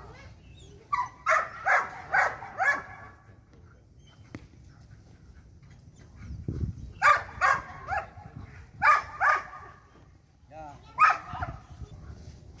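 Belgian Malinois barking in four short runs of quick, loud barks during bite-sleeve training.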